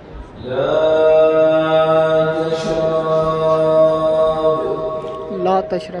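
A man's chanted call holding one long, steady note for about four and a half seconds. It marks the end of the pre-dawn meal time for the fast, after which no more water may be drunk.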